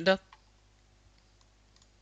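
The end of a spoken word, then near silence with a few faint clicks.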